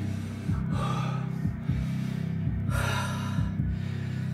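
A man breathing hard, with two loud gasping breaths, about a second in and about three seconds in: winded from sets of burpees.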